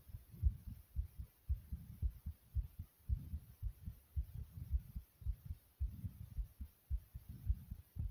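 Rapid heartbeat after jumping jacks, heard as repeated low thumps picked up at the chest.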